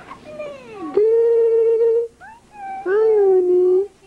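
A domestic cat meowing loudly: a couple of short, falling calls, then two long, drawn-out meows of about a second each.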